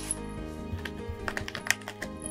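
Background music, with a quick run of light clicks and scratches from about a second in: cats' claws on a corrugated cardboard scratcher.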